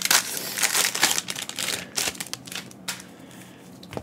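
Foil wrapper of a Panini Mosaic basketball card pack crinkling as it is handled, in several short bursts during the first two seconds, then quieter.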